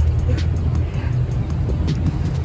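Outdoor street ambience: a loud, steady, low rumble of wind on a handheld phone microphone, with traffic noise and a couple of faint clicks.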